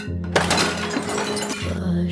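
Trailer music with a steady low bass line. About a third of a second in, something crashes and breaks, and the clatter trails off over the next second or so.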